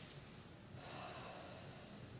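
A person's single faint breath, drawn through the nose, lasting about a second from a little before the middle, during still seated meditation.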